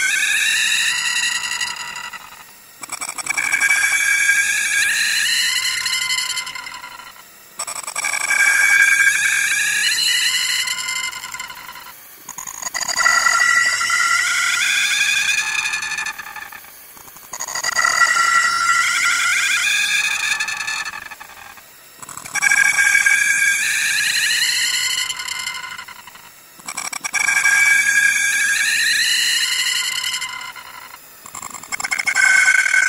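A looped, electronically distorted high-pitched tone that rises slowly in pitch for about four seconds, breaks off, and starts again, repeating about every five seconds.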